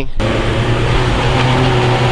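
A car engine running hard at a steady pitch, with a broad hiss, as a car strains on a steep, wet hill where cars are losing grip.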